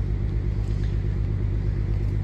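A steady low engine rumble, an even hum with no change in pitch.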